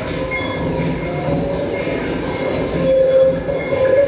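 Live experimental electronic drone from synthesizers and electronics: a continuous, dense, noisy wash with several sustained high tones held over it, swelling a little near the end.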